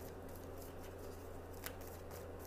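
Quiet room tone with a steady low hum and a few faint clicks, the clearest about one and a half seconds in.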